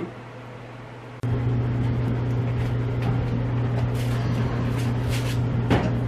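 Clothes dryer running: a steady low hum of constant pitch that starts suddenly about a second in. Near the end a plastic bag rustles and something is set down with a knock.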